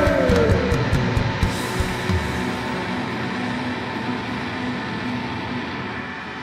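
Loud rock band playing live with distorted electric guitars and drums, a sung note sliding down and trailing off in the first second. About two seconds in, the low end and drum hits thin out, leaving a sustained droning wash of guitar.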